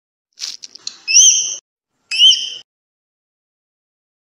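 Cartoon intro sound effects: a brief crackle like an eggshell breaking, then two high whistled bird chirps, each about half a second long and about a second apart.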